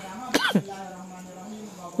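A man's brief throat-clearing sound, followed by a low, steady hum held for over a second.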